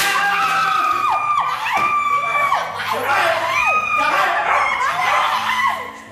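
Women screaming in fright at a dog: a string of long, high cries, each sliding down in pitch at its end.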